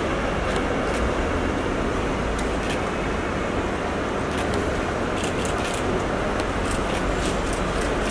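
Steady background din like road traffic at an open-air airport forecourt, with a few faint ticks scattered through it.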